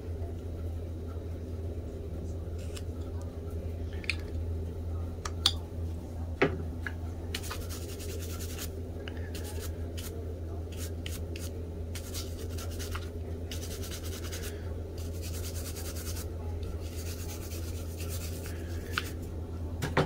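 Hand tools working a small wooden carving: a few light clicks and cuts, then a run of repeated scratchy strokes on the wood for several seconds, over a steady low hum.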